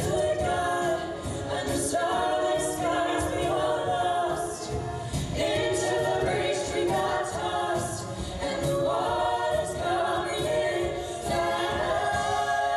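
A cappella vocal group singing in harmony into microphones, several voices holding sustained chords throughout.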